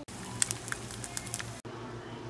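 Eggs frying in hot fat in a pan: a steady sizzle with scattered sharp pops and crackles, which cuts off suddenly about one and a half seconds in.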